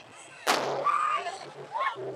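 Aerial firework shell bursting with a single sharp bang about half a second in, followed by voices of onlookers.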